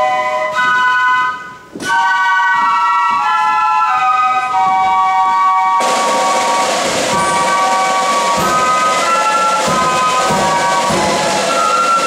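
Flute band playing a tune with the flutes in harmony. After a brief break and a single drum hit about two seconds in, the flutes resume, and about halfway through the drums join in under them.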